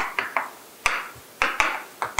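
Chalk on a chalkboard while writing: a quick, irregular series of sharp taps, about six in two seconds, as the chalk strikes and strokes the board.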